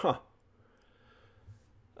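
Near silence in a quiet voice-over recording after a man's short spoken 'huh?', with a few faint clicks.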